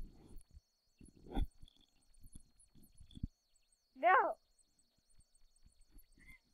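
Mostly quiet, with a few faint clicks and soft bumps, then about four seconds in a single brief voice-like cry that slides down in pitch.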